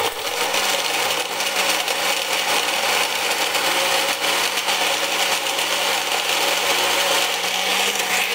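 Personal bullet-style blender switching on and running at a steady pitch, its motor humming under the whirr of the blades as it blends banana, evaporated milk and ice into a shake.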